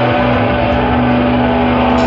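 Electric guitars and bass of a live indie rock band holding a loud, steady distorted drone, with no drum hits.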